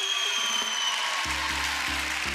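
Studio audience applauding as show music comes in. A high held tone sounds in the first second, and just over a second in a low pulsing bass line of repeated notes starts.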